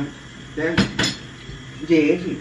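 Two sharp clinks of a metal fork against a small china plate, about a fifth of a second apart, a little under a second in.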